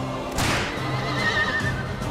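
A film soundtrack excerpt with music running under it. About half a second in there is a sudden sharp sound. Later comes a high, wavering cry that is most like a horse's whinny.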